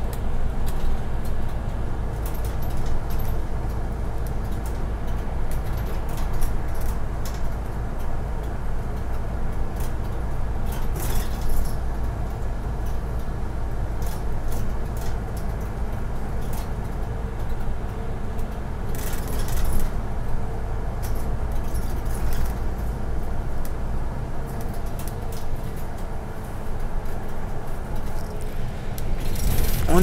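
Inside a moving city bus: a steady engine and road rumble, with a few brief rattles from the cabin about a third and two-thirds of the way through.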